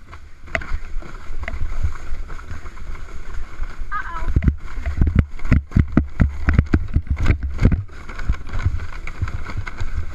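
Plastic sled sliding fast down a bumpy snow slope: wind rumbling on the sled-mounted microphone, and the sled scraping and knocking over ridges of packed snow, with the thumps thickest in the middle of the run.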